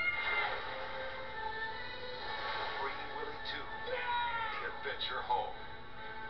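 Film trailer soundtrack playing from a TV speaker: music with a few short, gliding, squeal-like calls in the second half.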